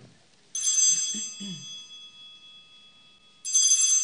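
Altar bells rung twice, about three seconds apart, each a bright jingling burst that settles into a slowly fading high ring. They mark the elevation of the chalice at the consecration of the Mass.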